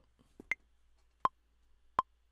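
Native Instruments Maschine metronome clicking a count-in at about 81 beats per minute: a higher-pitched accented click on the first beat, then lower clicks, short and evenly spaced.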